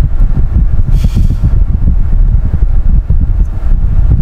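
Car running, heard from inside the cabin as a loud, low, steady rumble.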